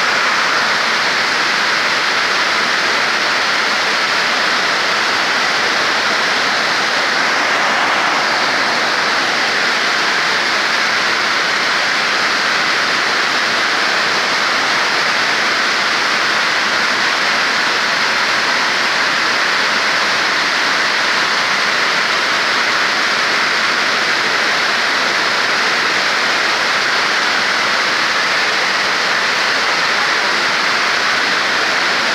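Heavy rain falling, a loud, steady hiss that never lets up.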